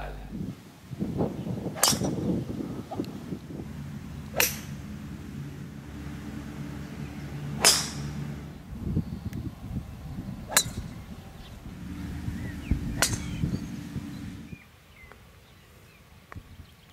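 Golf clubs striking balls: five sharp cracks a few seconds apart, over a low rumble of wind on the microphone that dies away near the end.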